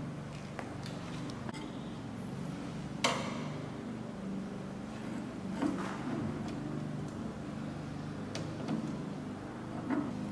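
Handling sounds as a plastic wire-feed tube is fitted to a laser welder's wire feeder: one sharp click about three seconds in and a few softer ticks, over a low steady hum.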